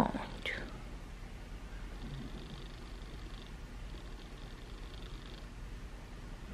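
Quiet room with a low steady hum and soft, faint rustling of the blanket and padded infant seat as a sleeping baby is rocked by hand.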